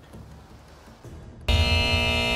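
Quiet studio room tone, then about one and a half seconds in a loud, steady musical chord with heavy bass comes in suddenly: a TV show's transition sting.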